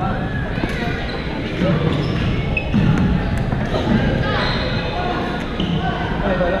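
Badminton hall in play: many voices echoing in a large gym, mixed with short sneaker squeaks on the court floor and light racket hits on shuttlecocks.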